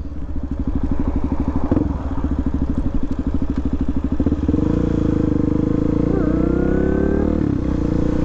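2016 Suzuki DRZ400SM supermoto's single-cylinder four-stroke engine running at low revs, each firing pulse separately audible. About four and a half seconds in, it is opened up and the revs climb for about three seconds, briefly drop near the end, then hold steady.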